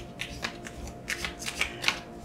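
A deck of cards being shuffled by hand, packets lifted and dropped from one hand onto the other: a string of quick, irregular soft slaps and flutters of card edges.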